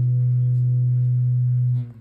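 The final chord of a guitar-and-bass bolero ringing out: a strong low note held steady with the guitars' higher tones fading above it, then cut off shortly before the end.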